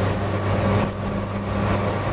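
The 1986 Isuzu Trooper's turbo-diesel engine is heard from inside the cabin, running steadily under load as it pulls uphill in second gear.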